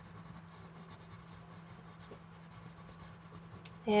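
Faint scratching of a yellow Crayola colored pencil being worked over white drawing paper, shading in an area.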